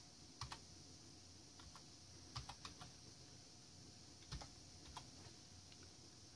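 Faint, unevenly spaced keystrokes on a computer keyboard, about a dozen key presses, some in quick pairs: a password being typed at a prompt.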